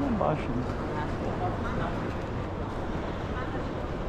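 Busy railway station concourse ambience: a steady hubbub of indistinct voices from passers-by over a low background hum, with one voice briefly close near the start.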